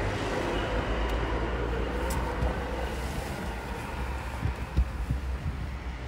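Steady low outdoor rumble of wind on the microphone and road traffic, with a few knocks about four and a half seconds in.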